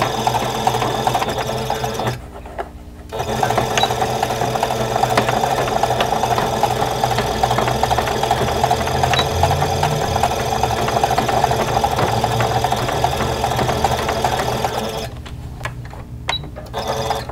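Electric sewing machine stitching across the end of a pleated cotton face mask, running steadily with a brief pause about two seconds in, then stopping near the end.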